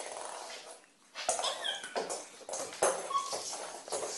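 A crawling baby's short, high squeaks and breathy noises, with faint rustling between them.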